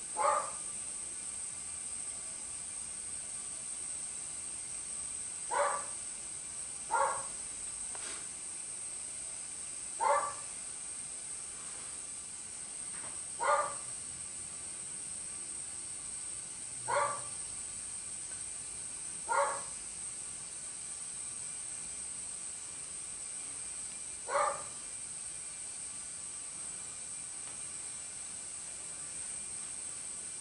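A dog barking in single short barks, eight of them, spaced a few seconds apart.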